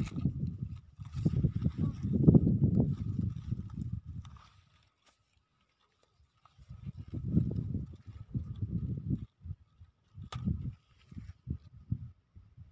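Low rumbling noise in irregular bursts, with a gap of near silence of about two seconds a little before the middle, and a faint steady high tone running underneath.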